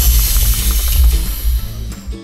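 Air hissing steadily out of an inflated dog life jacket's oral inflation tube as the bladder is deflated, cutting off near the end. Background music runs underneath.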